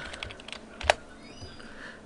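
Computer keyboard typing: a few quick key taps, then one sharper click just under a second in.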